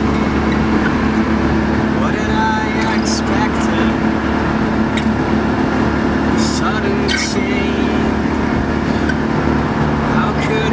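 Citroën 2CV's air-cooled flat-twin engine droning steadily inside the cabin, heard under a man's voice and strummed acoustic guitar.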